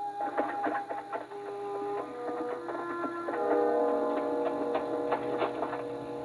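Western film score music: held notes that step to new pitches every second or so, over a running series of short, sharp strikes.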